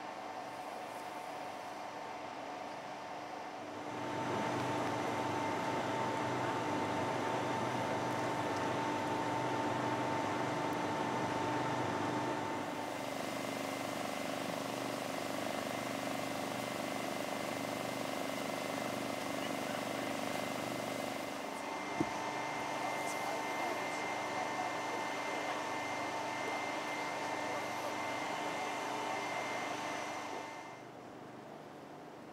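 Steady hum of running engines with several constant tones. It shifts in level and pitch about four, twelve and twenty-one seconds in, and a single sharp click comes near twenty-two seconds.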